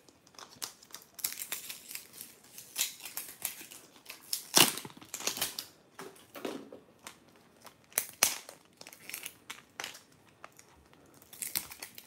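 Plastic seal on a Zuru Mini Brands capsule ball being crinkled and torn open by hand: irregular crackling and rustling, with a louder rip about four and a half seconds in.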